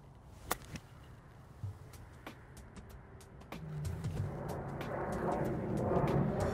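A faint, sharp click about half a second in: a lob wedge striking a golf ball off the grass on a flop shot. A few fainter ticks and a soft low thud follow, and a low background sound swells over the last two seconds.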